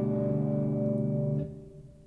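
Electric guitar in drop D tuning sustaining a G chord with the open low D string left in the bass. It rings steadily, then is cut off about one and a half seconds in.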